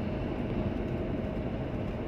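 Steady car cabin noise of driving at cruising speed: engine and tyre rumble on smooth new asphalt, heard from inside the car.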